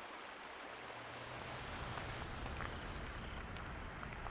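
Faint, steady rushing of a shallow creek running over rocks.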